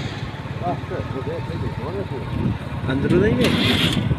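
A vehicle engine running steadily at low speed, with voices in the background and a short hiss near the end.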